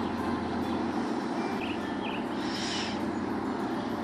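Low, steady engine burble of a slow-moving canal workboat, with a few short bird chirps around the middle.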